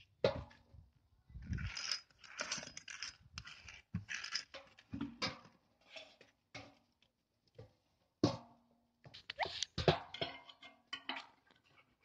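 Handling noise from a satellite dish and its metal mounting bracket being turned over and fitted: irregular knocks, clanks and short scrapes, with a few sharper knocks near the end.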